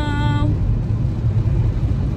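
Fiat 500 running, a low steady rumble heard inside the car's cabin.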